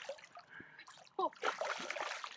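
A big hooked trout thrashing and splashing at the water's surface beside a canoe, in two bursts: a short one right at the start and a longer one about a second and a half in.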